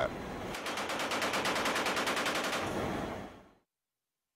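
Machine gun firing one long, rapid burst of about ten rounds a second, fading away shortly before the end.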